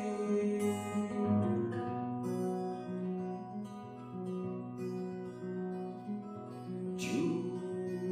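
Solo acoustic guitar playing an instrumental passage: a repeating pattern of picked notes over a low bass line, with a brief hiss near the end.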